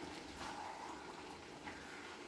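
Minced-meat and tomato filling simmering in a frying pan: a faint, steady bubbling.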